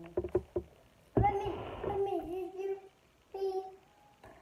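A few small clicks as two people drink, then a drawn-out, wavering closed-mouth 'mmm' from a woman reacting to the taste of the drink, with a second short one near the end.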